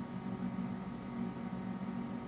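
Idle IGT AVP video slot machine giving a steady low hum with a faint hiss from its cooling fan and electronics, with no game sounds.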